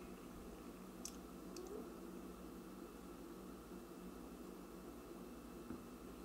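Quiet room tone with a few faint wet mouth clicks and lip smacks from tasting a mouthful of beer, about a second in and again half a second later. A soft tap near the end as the glass is set down on a coaster.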